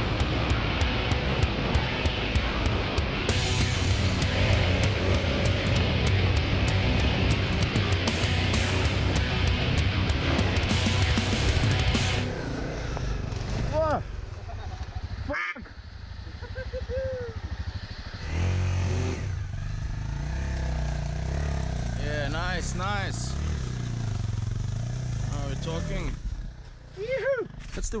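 Rock music with guitar for about the first twelve seconds. After it stops, a dirt bike's engine runs and revs at intervals, with short bursts of voice.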